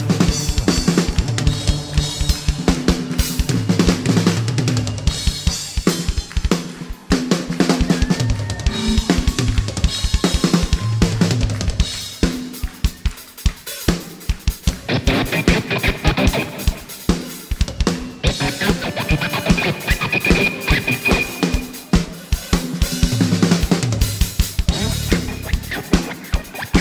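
Live rock-style band playing an upbeat instrumental passage, led by a drum kit driving a steady beat on bass drum and snare, with electric bass, guitar and keyboards.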